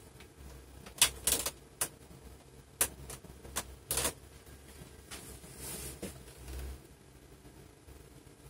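A run of sharp, irregular clicks and knocks, about ten in the first six seconds, over a faint low rumble.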